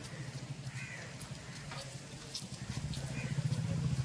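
A small engine running with a steady low pulsing hum that grows louder over the last second or so, with two short bird calls over it, about a second in and about three seconds in.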